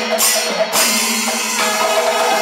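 Panchavadyam temple ensemble playing: timila hourglass drums beaten by hand, with a sharp metallic clash about twice a second over held horn tones. The regular clashes break off about two-thirds of a second in, and the drumming carries on in a denser texture.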